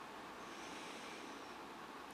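Faint steady background hiss, a little brighter in the middle, with no distinct event.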